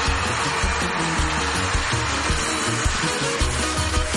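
Live stage music: the instrumental opening of a medley of telenovela themes, with a pulsing bass line under a dense wash of high sound.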